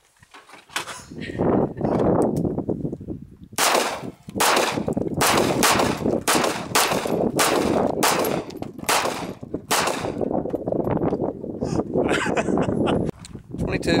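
A semi-automatic pistol fired in a rapid string of about a dozen shots, roughly two a second, starting a few seconds in.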